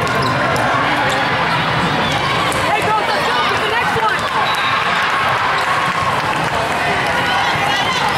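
Echoing din of an indoor volleyball tournament hall: many overlapping voices, with scattered sharp slaps of volleyballs being hit and bouncing on the courts.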